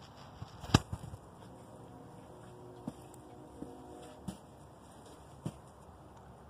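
Low background noise with a few scattered faint clicks and knocks, the sharpest one under a second in.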